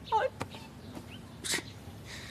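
A person's brief wavering, wordless vocal sound, a sort of hum or grunt, with a click just after it, then a short sharp breath about one and a half seconds in.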